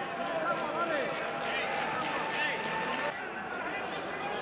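Football match sound from the pitch: indistinct voices shouting over a steady background hum of the ground, with a single sharp knock about three seconds in.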